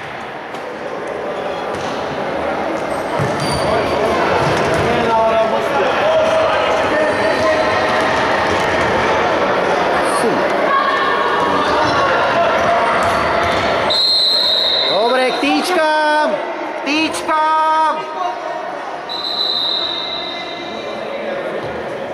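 Indoor futsal match in an echoing sports hall: players and bench shouting, with the ball being kicked and bouncing on the hard court. Two short, high, steady referee's whistle blasts sound about fourteen and nineteen seconds in, ahead of a restart.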